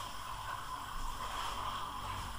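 Steady background hiss with a faint low hum and no distinct events: the recording's room tone between narration.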